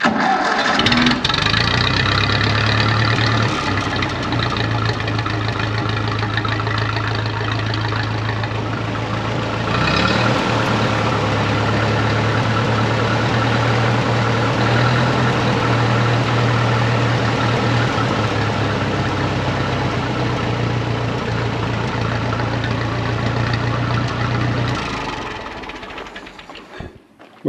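Grey Ferguson tractor's four-cylinder engine catching almost at once and running at a steady idle, with a brief change about ten seconds in, then shut down near the end. It is running on ignition points set only by eye, still awaiting a tune-up.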